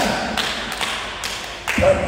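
A few light taps and knocks, spaced irregularly, with a stronger thump near the end.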